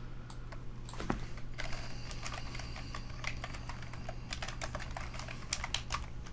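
Typing on a computer keyboard: a run of quick key clicks lasting about four seconds, starting a second or so in.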